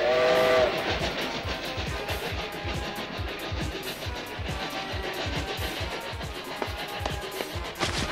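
Cartoon steam locomotive sound effects: a short chord-like steam whistle blast at the start, then a steady rhythmic chugging of about three to four beats a second, with background music.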